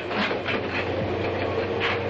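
A moving train running at speed: a steady rumble with a few sharp clicks scattered through it.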